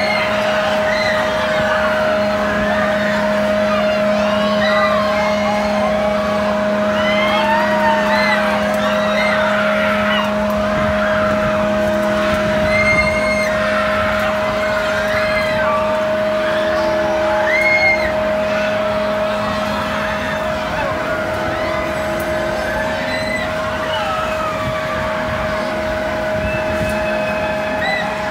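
Thrill-ride machinery running with a steady two-note hum, and many riders screaming and shouting over it.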